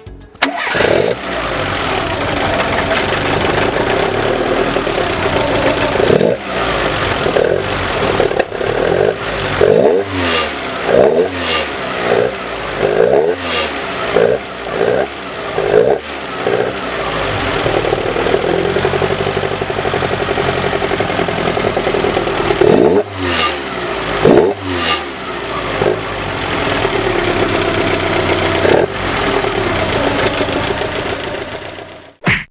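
Fiat Ritmo 130 TC Abarth's two-litre Lampredi twin-cam four-cylinder, fed by two twin-choke horizontal carburettors, running with the throttle blipped. A rapid string of about ten quick revs comes in the middle, then two sharp ones later and a last one near the end, each dropping back to a steady idle.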